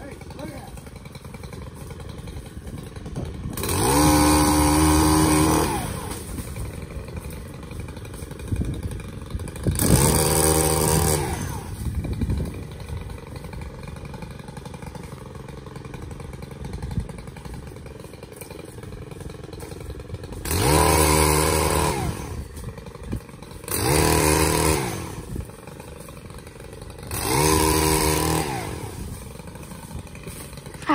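Powered pole saw cutting branches in five bursts of a couple of seconds each: the motor revs up, runs at a steady pitch and winds down again each time.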